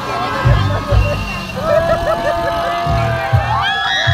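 People on a moving fairground ride shouting, with one long wavering cry in the second half, over loud fair music with deep bass thumps.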